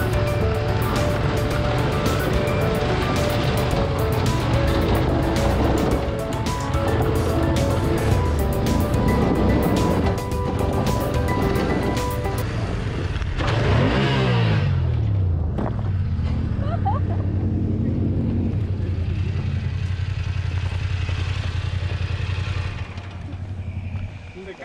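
BMW F850GS parallel-twin engine running on a gravel track, with dense crackle from loose stones under the tyres for about the first half, over background music. About halfway through, the engine note falls as the bike slows, then it runs on at a low steady pitch until it quietens near the end.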